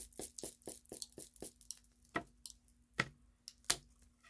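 A deck of tarot cards being hand-shuffled: a quick run of soft card clicks and slaps, about four or five a second, then a few single clicks spaced further apart.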